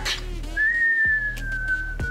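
A person whistling one long note that starts about half a second in and slowly falls in pitch, imitating a hit baseball flying through the air and coming down. Background music with steady low bass tones plays under it.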